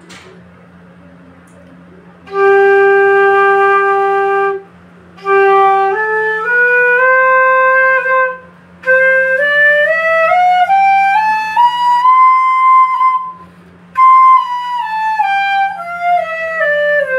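Bamboo bansuri in C natural, medium size, played to check its tuning. After about two seconds of quiet, it holds one long low note for about two seconds, then climbs a stepwise scale to a high note. After a short pause it comes back down the scale.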